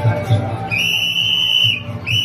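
A whistle blown in one long, steady, high blast of about a second, starting a little under a second in, over a low steady drumbeat.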